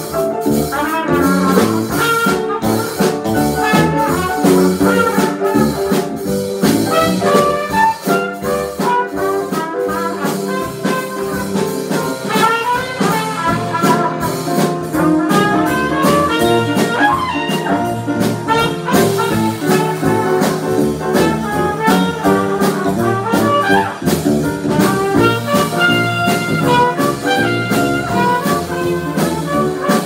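A small jazz band playing an instrumental chorus: trumpet carrying the melody over piano, electric bass and drums.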